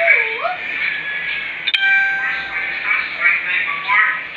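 A person's voice with gliding pitch, and a single sharp ding a little before halfway whose bright metallic tone rings for about a second.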